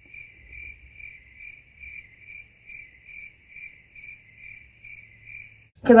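Edited-in cricket chirping sound effect: an even run of short, high chirps, about two to three a second, that cuts off abruptly just before speech resumes near the end.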